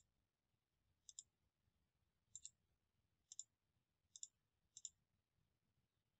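Faint computer mouse clicks, about six spread out at roughly one-second intervals, each a quick double tick of button press and release.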